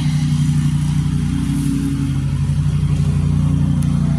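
A motor or engine running steadily nearby, a continuous low hum.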